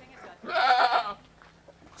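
An Etawa-crossbreed goat bleating once, a short call of just over half a second.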